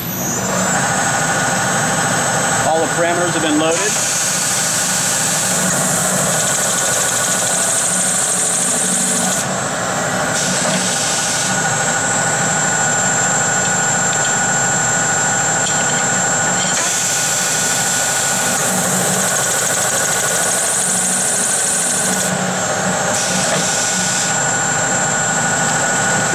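Servo Auto Champ chamfering machine running as it chamfers the end of a 7/16-inch round bar: a loud, steady motor whine with a harsher high hiss of the cut that swells for several seconds at a time, twice.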